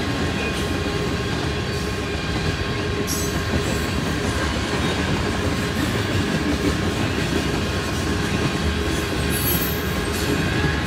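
Freight train cars rolling past: a steady, continuous rumble of steel wheels on rail, with a thin steady high tone over it.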